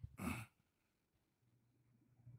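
A person's brief sigh, one short breathy exhale near the start.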